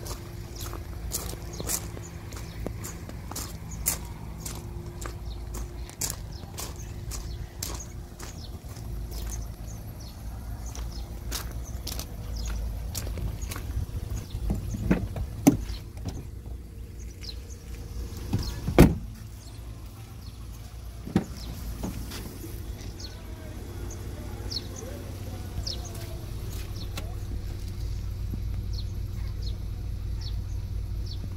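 Volkswagen Polo Vivo 1.4 engine idling, a steady low hum, under many sharp clicks and knocks. A few louder thumps come in the middle, the loudest just past halfway.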